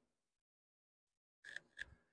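Near silence: room tone, with two faint short clicks near the end.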